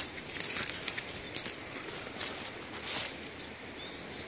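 Leaves and twigs rustling and crackling close to a phone microphone as someone pushes through dense undergrowth, in irregular sharp crackles bunched about half a second to a second and a half in.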